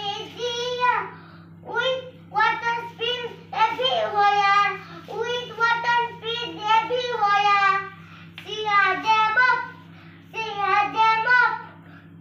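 A child singing a song unaccompanied in a high voice, in phrases broken by short pauses.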